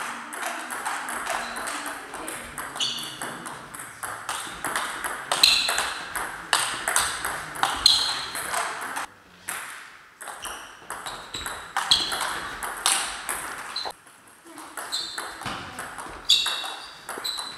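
Table tennis ball clicking sharply off rackets and the table in quick rallies, several hits a second, with more ball clicks from a neighbouring table, ringing in a large sports hall. The clicking drops off briefly twice, about nine and fourteen seconds in.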